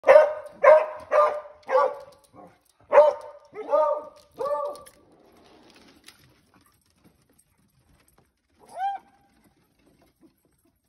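Beagles barking at a door: seven loud, quick barks over the first five seconds, then a single pitched yelp that rises and falls, just before the ninth second.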